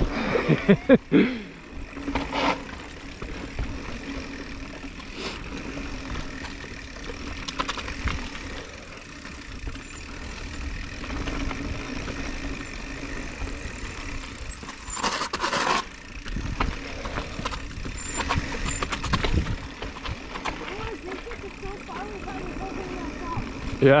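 Mountain bikes rolling fast down a dirt singletrack: steady tyre and wind rush with a faint steady hum, a laugh just after the start, and a short clatter of knocks over a bump about fifteen seconds in.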